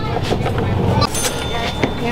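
Busy street background: a low rumble of road traffic with people's voices mixed in and scattered small clicks.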